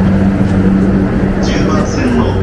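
Steady low hum from a JR Yamanote Line electric commuter train standing at the platform with its doors open, over a low rumble; voices come in near the end.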